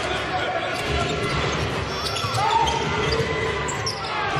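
Basketball being dribbled on a hardwood court, repeated low bounces over steady arena crowd noise.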